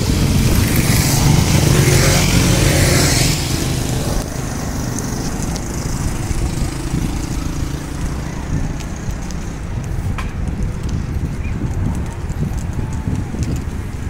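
Several motorcycles riding past close by, their engines loud for about the first three seconds; then a lower, steady rumble of engine and wind noise on the microphone.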